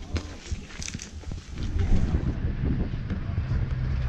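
Wind buffeting the microphone as a loud, steady low rumble, starting about halfway through. Before it come a few faint clicks and knocks.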